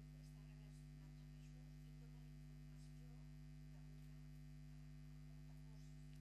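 Near silence apart from a steady, low electrical mains hum.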